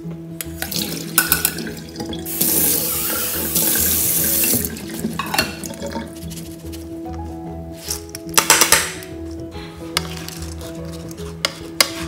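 Water poured out of soaked rice through a metal mesh strainer, splashing into a stainless steel sink for about two seconds, with clatters of the strainer and bowl before and after.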